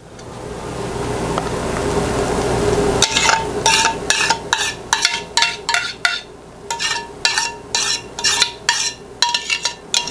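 A steady hiss that swells over the first three seconds, then a metal spoon scraping thick vanilla pudding out of a stainless steel saucepan into a plastic bowl, about three scrapes a second, each with a short ring from the pan.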